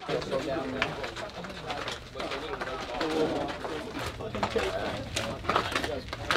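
Ambient sound in a baseball dugout: indistinct low chatter of players talking.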